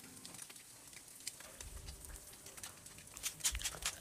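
Eggs in bread slices frying faintly in a nonstick pan, with scattered light ticks. Near the end comes a run of louder clicks as a wooden pepper mill grinds seasoning over them.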